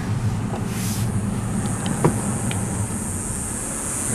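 Steady road noise of a car being driven: a low engine and tyre rumble under an even high hiss, with a faint click about two seconds in.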